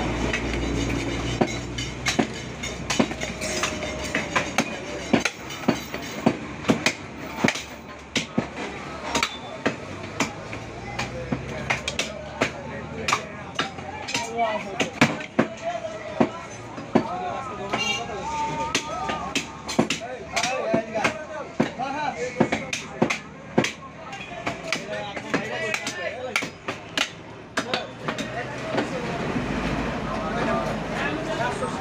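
Butcher's knife knocking and chopping against a wooden chopping block as beef is cut, a run of irregular sharp knocks, with people talking in the background.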